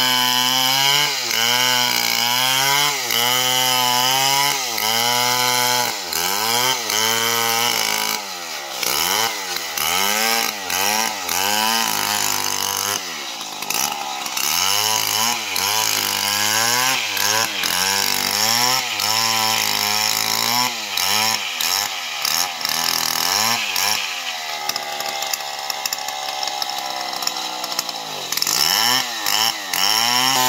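Stihl MS 070 two-stroke chainsaw ripping lengthwise through a jackfruit log. The engine pitch swings up and down about once a second as the chain loads and frees in the wood. Near the end it runs smoother and slightly quieter for a few seconds, then digs back into the cut.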